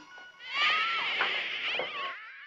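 High-pitched, wavering chittering squeals of a sci-fi film's alien creature sound effect, starting about half a second in and fading near the end.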